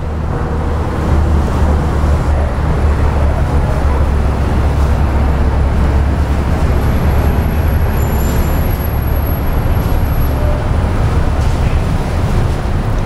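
Road traffic with a heavy vehicle's engine rumbling steadily close by, loud and low.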